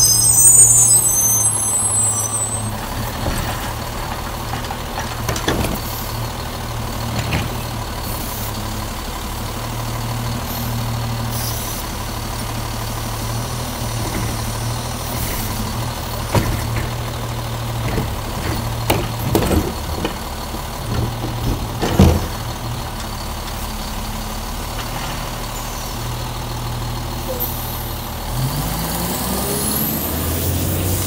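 Republic Services automated side-loader garbage truck: brakes squeal as it comes to a stop at the start, then its diesel engine runs steadily while the automated arm lifts and dumps a cart, with a series of clunks and bangs through the middle. Near the end the engine revs up.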